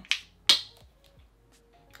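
A brief rustle, then a single sharp plastic click about half a second in, followed by a few faint ticks: a small plastic shampoo bottle and its cap being handled.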